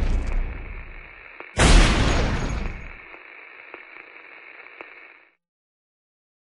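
Trailer sound-design boom: a second heavy hit lands about a second and a half in, on the fading tail of an earlier one, and dies away over about a second. A faint steady hiss with a few soft clicks follows and cuts off near the end.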